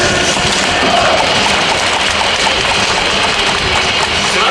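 Loud, steady stadium din: a crowd's noise over music from the public-address system, with no clear voice or tune standing out.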